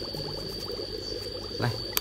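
Small 3 W single-outlet aquarium air pump running with a steady hum, its air bubbling up through a homemade bio filter in a bucket of water. The pump is not noisy. A brief click comes near the end.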